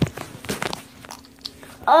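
Handling noise from a handheld phone: a sharp click, then a few softer knocks and rustles about half a second in, over a faint steady hum. A child's voice starts calling just at the end.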